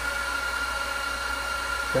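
Mellanox SN2010 Ethernet switch's cooling fans running loud at high speed while the switch boots: a steady rushing whoosh with a held whine.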